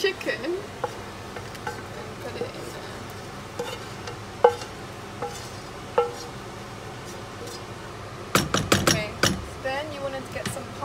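A wooden spoon scraping and knocking against a frying pan as cooked chicken pieces are pushed out into a pan of sauce. It makes scattered knocks and clinks, one louder knock about halfway through, then a quick run of louder scrapes and knocks near the end.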